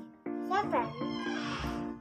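Background music of plucked guitar notes at a steady beat. About half a second in, a short high call rises and falls in pitch, and near the end there is a brief rustling noise.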